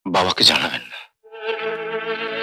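A man's voice for the first second. Then, a little over a second in, the background score's bowed strings enter on one long held note.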